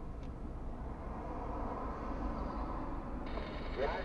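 Steady low rumble of a car idling while stopped, heard from inside the cabin. A voice starts up just before the end.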